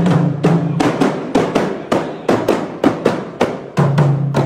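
Several hand-held frame drums beaten together in a quick, steady rhythm of about four to five strokes a second, with a low held chant of men's voices under them that drops out in the middle and returns near the end.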